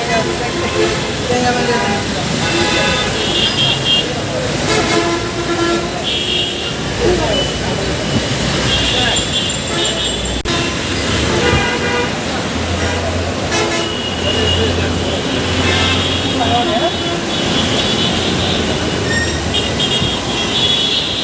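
Busy road traffic with vehicle horns tooting again and again in short blasts, over a steady hum of traffic and people's voices.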